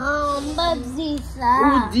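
A young boy and a woman speaking in a playful, sing-song voice, with the word 'pipi' near the end.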